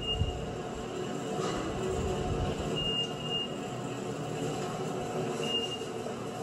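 Elevator car running between floors: a steady low rumble and rattle, with four short high beeps, one at the start, two close together midway and one near the end. Heard through a television's speaker.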